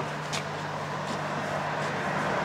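Steady low hum of motor vehicles in the background, with a couple of faint footsteps on asphalt.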